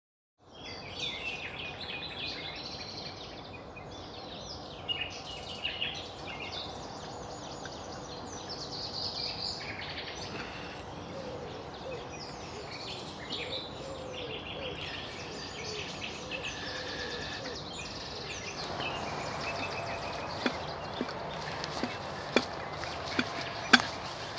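Several birds singing outdoors, many short, varied phrases overlapping over a steady background hiss. In the last few seconds a few sharp knocks break in, the loudest near the end.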